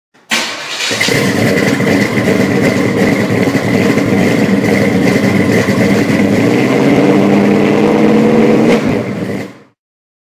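A car engine running loudly with a rough, uneven beat, starting suddenly at the very beginning and fading out shortly before ten seconds.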